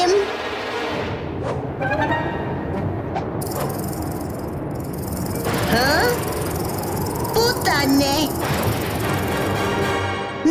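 Cartoon soundtrack: background music with sound effects running underneath, and a few short gliding vocal sounds without words.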